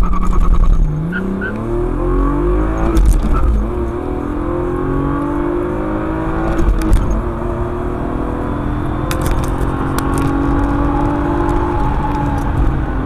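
A BMW straight-six engine accelerating hard through the gears, heard from inside the car. Its pitch climbs, drops back at each upshift about 1.5, 3 and 7 seconds in, then rises slowly in a higher gear.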